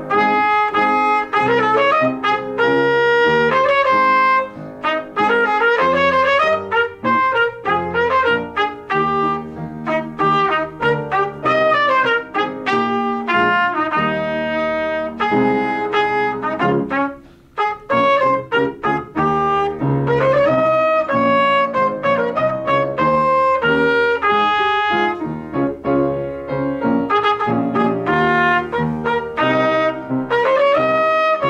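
Trumpet playing a classical solo melody, with piano accompaniment underneath; the playing breaks off briefly about seventeen seconds in.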